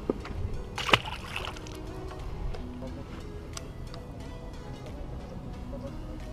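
A small bass released back into the water with one short splash about a second in.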